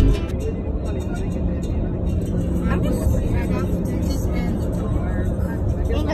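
Steady low rumble of a moving car, heard from inside the cabin, with a song and a faint voice over it.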